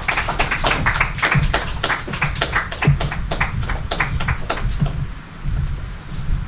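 A small audience applauding, with separate hand claps easy to pick out, dying away about five seconds in.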